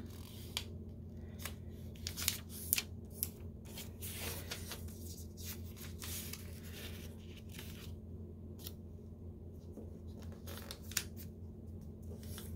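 A sheet of origami paper being folded and creased by hand: irregular crisp rustles and crinkles as the flaps are pressed down, over a steady low hum.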